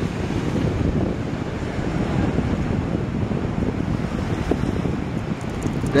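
Steady wind noise buffeting the microphone, mixed with the rush of moving water.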